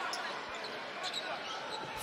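Steady arena crowd murmur with a basketball being dribbled on a hardwood court.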